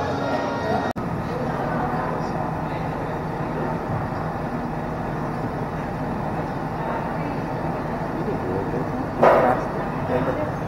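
Cotton candy machine running with a steady hum while its spinning head throws out floss, under the chatter of a busy room. A short louder burst comes near the end.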